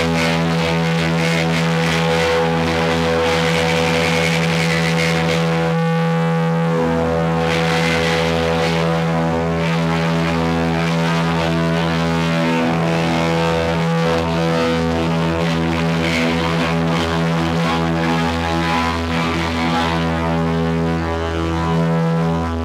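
Live band's amplified electric guitars and bass holding a loud, sustained droning chord, with swells of cymbal wash now and then.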